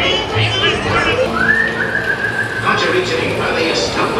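A long whistle that rises, then holds steady for about a second and a half, over the boat ride's soundtrack music and animatronic voices.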